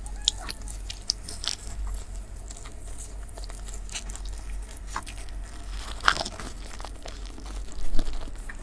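Close-miked chewing of a soft bread bun: small wet mouth clicks and smacks, with a louder bite just before the end. A steady low hum runs underneath.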